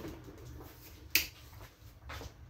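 A single short, sharp click about a second in, over faint soft rustling and a low hum.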